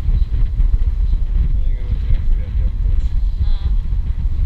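Wind buffeting the microphone in a loud, rough, uneven low rumble, over the rush of water breaking along the hull of a sailboat heeling under sail.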